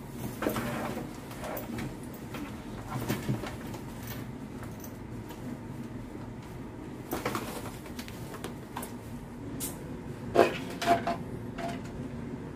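Handling noises from packing a fabric backpack and a plastic water bottle: scattered rustles, clicks and light knocks, with the sharpest knock about ten seconds in, followed by a brief squeak.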